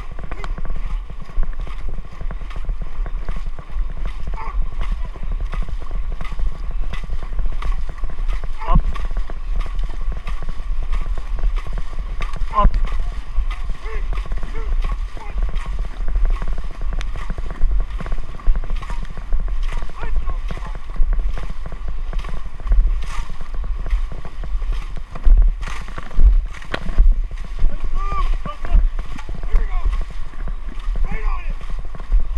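Dragon boat crew paddling hard: blades dig into the water and pull through in a quick, steady rhythm, with water splashing along the hull. Wind buffets the microphone with a heavy rumble.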